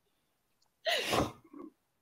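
A person's single short, sharp burst of breath about a second in, followed by a brief softer trail.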